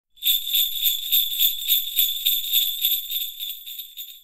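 Jingle bells shaken in a steady rhythm, about four shakes a second, fading away toward the end.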